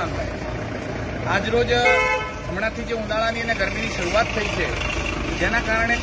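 Street traffic with a vehicle horn honking briefly about two seconds in, under ongoing men's speech.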